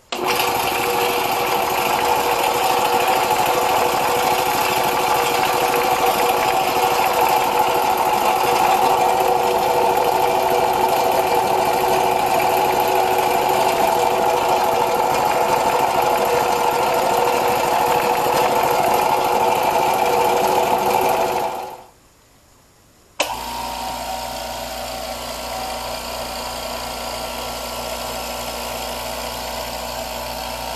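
Vespa 1/4 hp oil-lubricated piston air compressor switched on and running loudly for about twenty seconds, then dying away. After a short pause a Powercraft 1 hp oil-less air compressor starts and runs steadily, markedly quieter than the oiled one.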